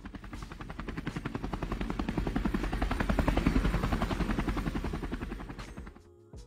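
Helicopter rotor chopping in rapid, even beats, about a dozen a second. It swells to a peak a little past the middle and then fades away, like a pass overhead.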